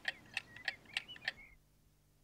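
A rapid, uneven run of small sharp clicks, about six a second, with faint high chirps among them. It stops abruptly about one and a half seconds in.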